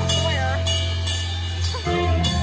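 Rock band playing live at full volume: bass and electric guitars hold a loud chord over drum cymbals, with a sung voice sliding in pitch on top.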